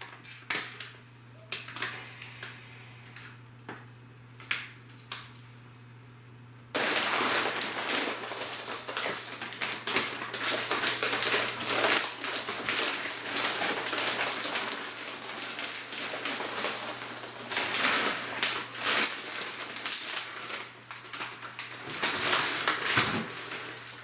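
Plastic bags of dry beans and rice being handled: a few light clicks and knocks, then from about seven seconds in a dense, continuous crinkling and rustling of the packaging with the grains shifting inside. A steady low electrical hum runs underneath.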